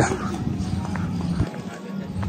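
Faint voices of people nearby over a steady low rumble of wind on the microphone, with a few light footsteps on stone paving.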